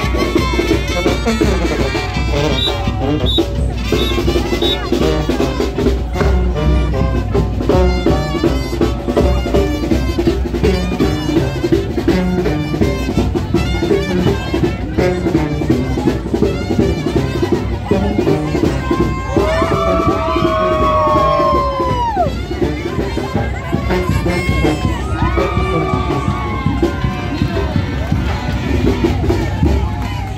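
Brass band music with drums and a steady beat, played loud for street dancing, under crowd voices. Long falling calls rise over the music about two-thirds of the way through, and again a few seconds later.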